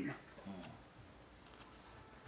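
Faint small clicks and rustling from hands handling a small object, over quiet room tone; a spoken word trails off at the very start.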